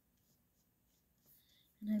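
Faint soft scratching of a fine paintbrush stroking watercolour paper, in near quiet; a woman starts speaking near the end.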